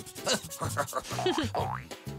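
Cartoon sound effects over playful children's music: springy boing-like tones and quick rising sweeps, accompanying an eraser rubbing something out.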